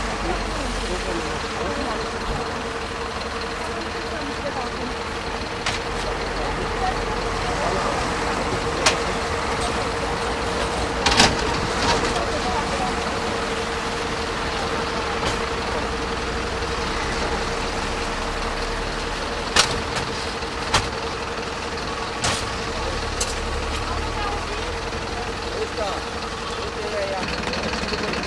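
A parked emergency vehicle's engine idling with a steady hum, and several sharp metallic knocks and clanks as a wheeled stretcher is loaded into an ambulance.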